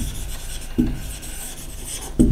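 Felt-tip marker writing on a whiteboard, the tip rubbing and scratching across the board.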